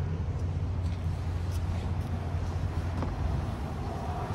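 A steady low rumble with an even background haze, with a few faint knocks scattered through it.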